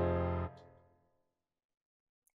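A sustained chord from a software keyboard instrument played back from a DAW piano roll, held until about half a second in and then dying away over about half a second.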